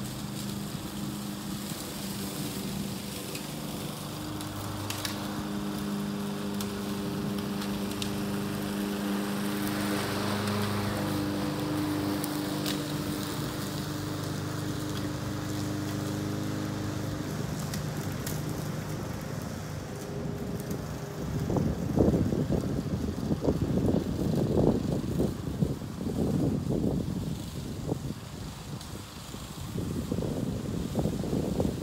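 Honda push mower's single-cylinder engine running steadily under load as it cuts grass, swelling to its loudest about a third of the way in and fading away by the middle as the mower moves off. In the last third, gusts of wind buffet the microphone with an irregular low rumble.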